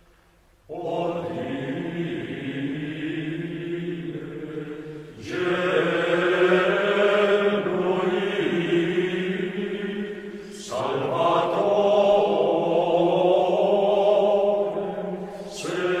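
Choir of Benedictine monks singing Gregorian chant in unison, a Latin responsory. The voices enter just under a second in and sing in long phrases, with short breaks for breath about five and ten and a half seconds in and again near the end.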